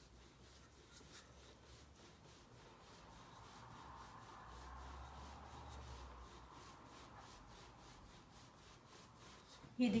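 Wooden rolling pin rolling over a floured block of laminated puff pastry dough on a wooden board: a faint, soft rubbing that grows a little louder in the middle and then fades back.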